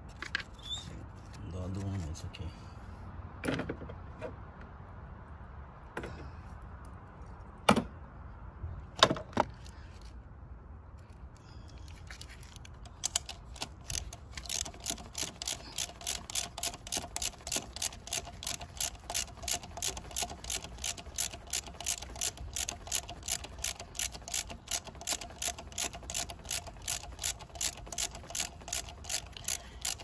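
Socket ratchet wrench being cranked on a bolt on an engine, a long steady run of clicks at about two to three a second through the second half. Before it, a few scattered sharp clicks and knocks of a hand tool working at an injector line connector.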